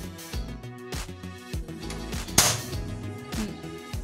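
Background music with a steady beat; about halfway through, one sharp snap with a brief hiss as the gas stove's piezo auto-igniter clicks and the burner lights.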